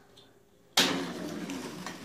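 A spring launcher snaps loose with a sharp crack about three-quarters of a second in. The wheeled model train then rolls off down the track with a rattling rolling noise that fades over about a second.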